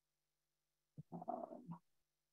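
Near silence, then a quiet, hesitant spoken "uh" from a woman about a second in.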